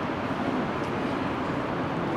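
Steady outdoor city ambience: an even, low background rumble with no distinct events.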